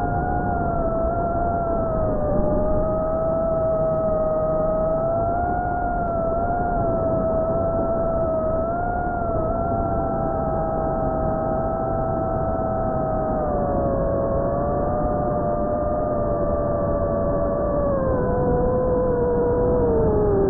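Electric motors and propellers of a small radio-controlled aircraft, heard through its onboard camera's microphone: a steady whine of a few close pitches over a rushing noise. The whine wavers slowly with throttle and drops lower near the end.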